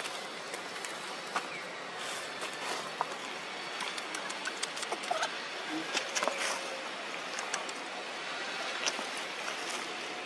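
Steady outdoor hiss with many scattered sharp clicks and a few brief chirps, thickest in the middle of the stretch.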